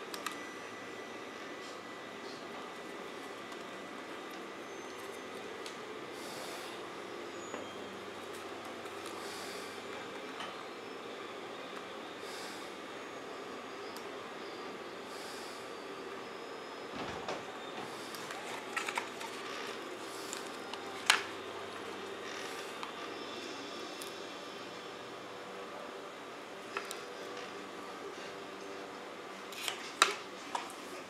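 Steady background hum of a workshop, with a few light clicks and taps of hands handling a plastic strip against a mold in the second half, the sharpest about two-thirds of the way in.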